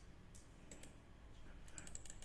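A few faint computer mouse clicks over near-silent room tone, with several in a quick cluster near the end.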